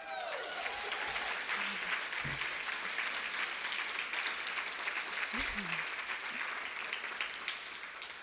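Audience applauding, the clapping coming in within the first second, holding steady, then tapering off near the end.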